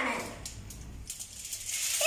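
A child's voice ends a phrase on a falling tone, then faint rustling and small clicks of handling.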